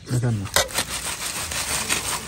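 A short vocal sound, then a dry, rasping rustle lasting about a second and a half as a plate of dried sal leaves is handled and crinkles.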